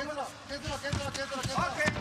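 Several dull thuds and slaps from two MMA fighters' exchange in the cage, bare feet and gloves striking, with voices calling out over them.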